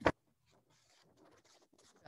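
Near silence over a Zoom call: a brief hiss at the very start, then almost nothing.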